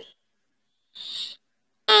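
Near-total silence broken once, about a second in, by a short breath sound, made thin and high by a helium-style voice-changing filter.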